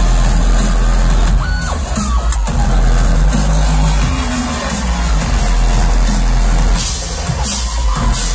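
Rock band playing live and loud, with heavy bass and drums in a repeating pattern, recorded from the audience.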